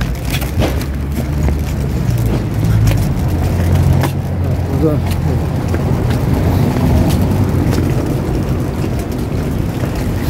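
A steady low rumble with a few faint clicks, strongest in the first few seconds.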